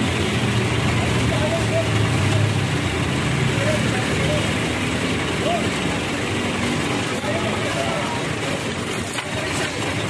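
Busy street noise: a steady running vehicle engine and traffic, with faint voices in the background.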